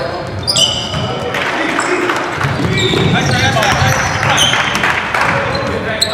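Basketball game on a hardwood gym floor: the ball bouncing, short high squeaks of sneakers, and players' voices calling out, echoing in the hall.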